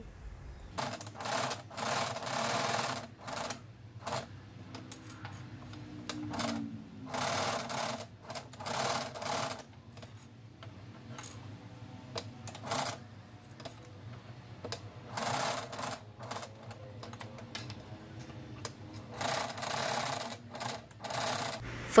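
Janome domestic sewing machine stitching in short runs of about a second, stopping and starting about a dozen times, with a faint steady hum underneath.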